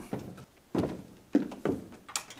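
A series of dull thuds, four in about two seconds and unevenly spaced, each dying away with a short echo.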